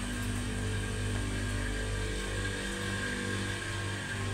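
Steady low electrical hum of shop refrigeration, from the running display freezers, with a faint steady high tone over a general shop hum.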